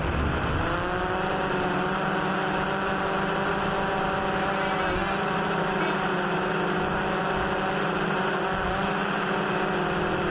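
Multirotor drone propellers humming, several close pitches rising over the first second and then holding steady, with wind noise underneath.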